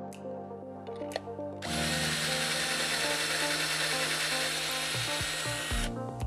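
Cordless drill running steadily for about four seconds, starting sharply about two seconds in and stopping just before the end, as it bores a pilot hole through a hinge-plate drilling template into a cabinet panel. Soft background music plays underneath.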